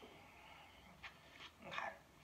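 Faint breathing sounds of a pug dog, with a short click about a second in. A woman says a brief 'okay' near the end.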